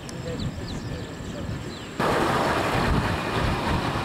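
Toyota FJ Cruiser's engine running as it drives slowly across grass, a low rumble with a few faint bird chirps over it. About halfway through, the sound jumps suddenly to a louder, rushing noise with the vehicle heard close by.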